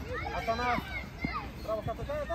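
Children's high voices shouting and calling over one another during a youth football game, with a few short knocks.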